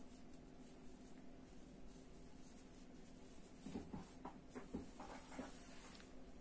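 Near silence: faint scratching of a metal crochet hook pulling cotton yarn through stitches, with a few soft short sounds about four to five seconds in, over a low steady hum.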